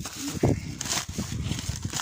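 Footsteps on dry grass and rock: a series of short scuffing steps, the loudest about half a second in.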